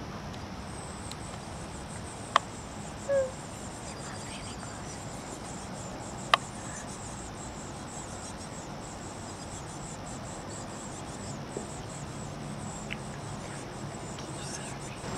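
A steady, high-pitched insect-like buzz in outdoor ambience, broken by two sharp taps about four seconds apart and one short low note.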